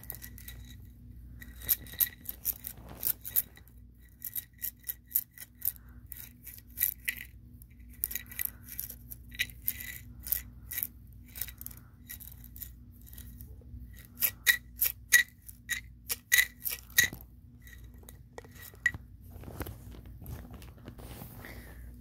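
Wooden toothpicks clicking and rattling inside a clear container, in bursts of sharp clicks with short pauses between.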